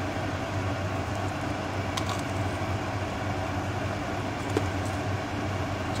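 Steady low hum and rush of a kitchen gas stove heating a pot of chicken stock toward the boil, with a faint click about two seconds in.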